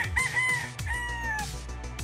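A gamefowl rooster crowing once, a call of a few drawn-out notes lasting about a second and a half, over background music with a steady beat.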